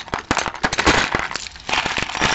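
Loose costume jewelry being rummaged through by hand in a cardboard tray: metal chains, bangles and beads clinking and rattling against each other in a quick jumble of small clicks, busiest about a second in.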